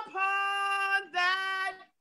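A man singing unaccompanied in a high voice, holding two long, steady notes one after the other.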